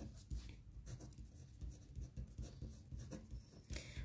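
A pen writing on paper: faint, irregular short scratching strokes.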